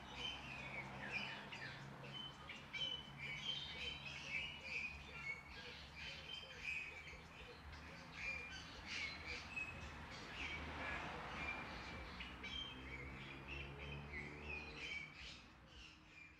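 Birds chirping: a continuous run of short, high chirps and calls, faint, over a low steady hum.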